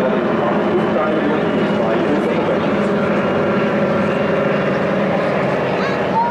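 Several piston-engined propeller aircraft flying past together in formation, their engines making a steady, loud overlapping drone.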